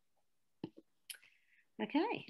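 A pause in which two soft clicks, likely mouth or lip clicks, are followed by a short breathy hiss. Near the end a woman begins speaking with 'OK'.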